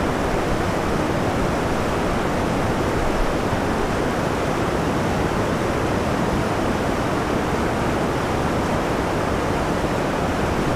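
Loud, steady rush of whitewater tumbling over and below a creek spillway, an even roar with no breaks.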